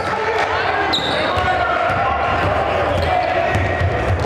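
A basketball dribbled on a hardwood gym floor, with sharp bounces amid the steady chatter and calls of players and spectators.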